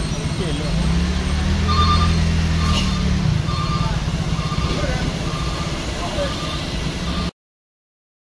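Heavy truck diesel engine running under load, swelling for a second or so before easing off, with a short high electronic beep repeating about every three quarters of a second from about two seconds in. The sound cuts off abruptly near the end.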